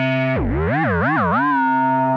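Korg monologue monophonic analogue synthesizer holding a sustained note. About a third of a second in, its pitch dips sharply and wobbles down and up three times, then settles back on the same note.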